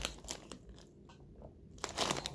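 Faint crunching and crinkling from a packet of Tatkrak spicy pretzel sticks being handled. It is mostly quiet through the middle, with a sharp crackle near the end.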